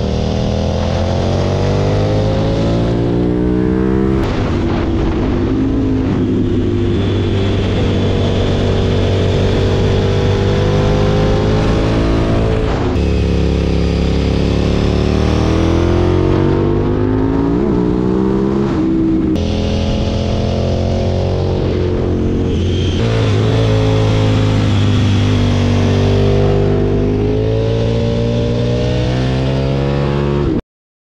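2006 KTM 990 Super Duke's V-twin engine under way, its pitch climbing as it accelerates and dropping at each gear change or roll-off, several times over.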